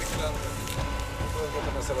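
Faint, low voices of men in a small gathered crowd talking quietly, over a steady low rumble.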